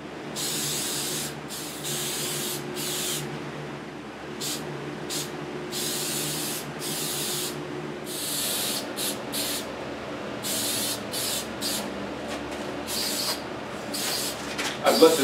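Aerosol spray can of shellac hissing in a long series of bursts, some brief and some a second or so long, as a coat is sprayed onto a wooden frame.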